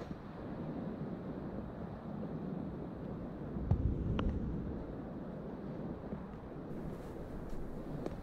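Wind rumbling on the microphone, swelling briefly about halfway through.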